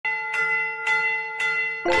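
Bell-like chime opening a song, struck about twice a second, each stroke ringing on in one steady note. Just before the end the full music comes in with a singer.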